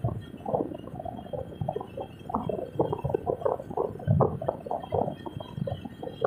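Noise of a moving car picked up by a dashcam microphone: an irregular, bubbling rumble that runs on without a steady tone.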